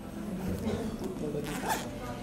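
Indistinct background chatter of voices, with one short rasp about one and a half seconds in.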